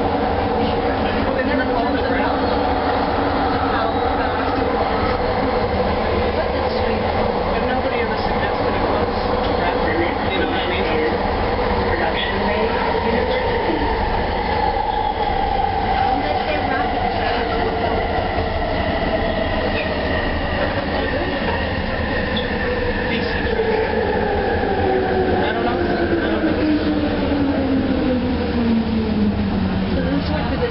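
Bombardier Mark II SkyTrain car running on its elevated guideway, with a low rumble from the wheels on the track. Over its linear induction motors' steady whine, the pitch falls gradually through the second half as the train slows into a station.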